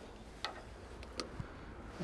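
Two light clicks, about half a second and just over a second in, over a faint steady background.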